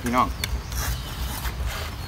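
A few short clicks and light scrapes as a green mango is cut by hand, over a steady low rumble, after a brief word of speech.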